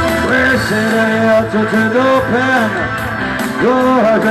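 Live rock band playing loudly, with a melodic line of arching, rising and falling notes over the band. The deep bass drops away about a quarter second in.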